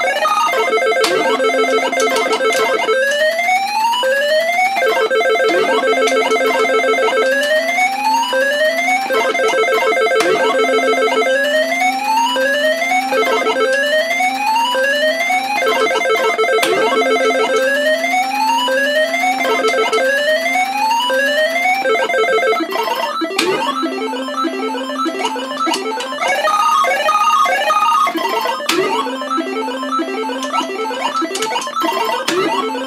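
Electronic tune from a Universal Tropicana 7st pachislot machine: quick rising beeping note runs repeating over a steady low hum, changing to a different phrase a little over three-quarters of the way through.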